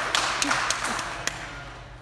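Audience laughter with a few scattered claps, fading away over about a second and a half.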